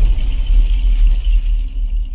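Intro sound-design rumble: a loud, sustained deep bass rumble with a faint high shimmer above it, dipping a little toward the end.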